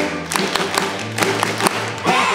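Live rock band playing an instrumental break with no singing: a held bass note under a quick run of sharp percussive hits, about four a second, from drums or hand claps.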